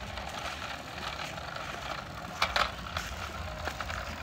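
Small wheels of a toy city bus rolling and scraping along rough concrete as it is pushed by hand: a steady gritty rolling noise, with a couple of louder scrapes about two and a half seconds in.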